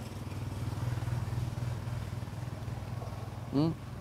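A small engine running steadily with a low, even hum and rapid pulsing, as at idle. A brief spoken 'ừ' comes near the end.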